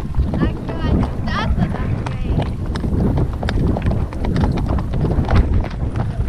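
Horses' hooves striking a dirt track, a run of short irregular knocks over a steady low rumble, with a voice briefly about a second in.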